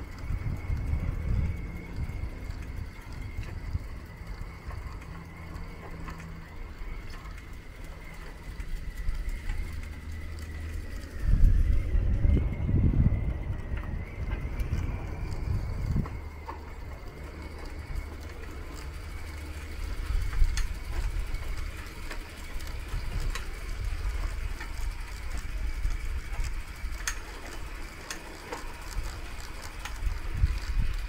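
Night street ambience: a steady low rumble with a faint steady high tone above it. A louder low swell rises about eleven seconds in and fades over the next few seconds.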